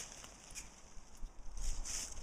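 Quiet spruce-woodland ambience: faint rustling with a few small clicks, and a louder rustle near the end.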